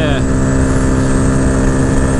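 2022 Honda Grom's 124 cc single-cylinder four-stroke, fitted with a DHM camshaft, intake and ECU flash, running steadily at high revs in fifth gear at about 70 mph. The engine note holds steady over heavy wind and road noise on the handlebar microphone.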